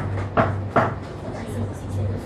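Three sharp clacks about half a second apart, over a steady low electrical hum.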